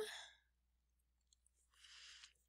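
Near silence, broken near the end by a faint, short intake of breath.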